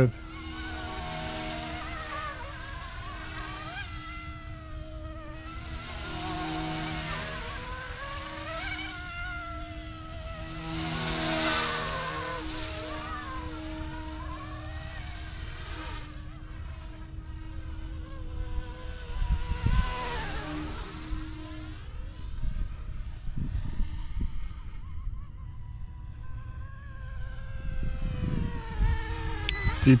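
A YUXIANG F09-S Jayhawk RC helicopter in flight: a steady high whine from its motor and rotors, with the pitch rising and falling several times as it flies back and forth. Wind gusts rumble on the microphone now and then in the second half.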